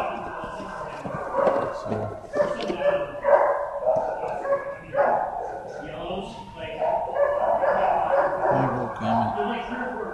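Dogs in a shelter kennel block barking, yipping and whining, a continuous din with no pause.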